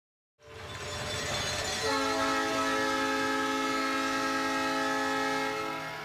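Multi-note air horn, of the kind used as a hockey arena's goal horn, sounding one long, steady chord. It comes in about half a second in and is held for roughly five seconds.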